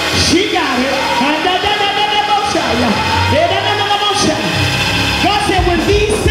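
Gospel praise-break music: a church band plays a steady bass with cymbal strokes, while a voice on the microphone holds long notes that slide up and down over it.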